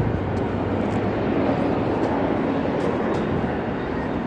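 Steady rumble and hiss of vehicle traffic, with no single event standing out.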